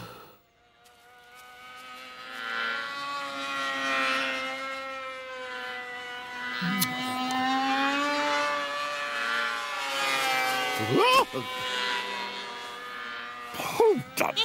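Small propeller aircraft engine buzzing overhead. It fades in over the first couple of seconds, drones steadily with its pitch slowly wavering, and drops away about ten seconds in.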